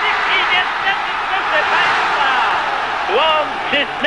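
Stadium crowd cheering a goal, the roar swelling to a peak midway and easing off, with a man's voice over it near the end.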